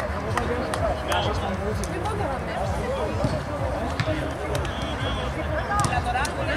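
Indistinct voices of players and onlookers calling out and chattering around an outdoor football pitch, with scattered short knocks.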